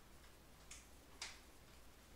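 Near silence with a faint low hum, broken by two short soft clicks about half a second apart, the second one louder.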